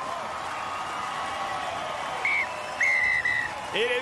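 Stadium crowd cheering and applauding, with a referee's whistle blown just past the middle, a short blast then a longer one: the full-time whistle.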